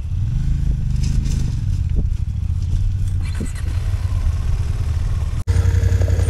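Adventure motorcycle engine running while the bike rides over loose gravel; its note rises about half a second in, then eases, with a few sharp knocks. Near the end the sound cuts abruptly to a steadier engine drone.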